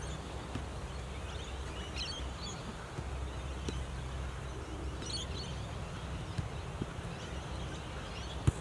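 Open-air ambience with a steady low rumble, faint bird calls about two seconds in and again about five seconds in, and a few faint taps.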